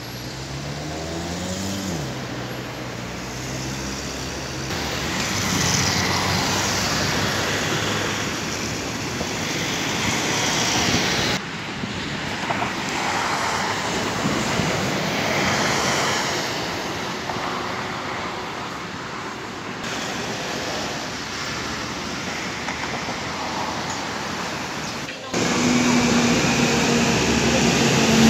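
Buses and road traffic going by, a steady traffic noise with one engine rising in pitch over the first two seconds. The sound changes abruptly several times as the clips cut.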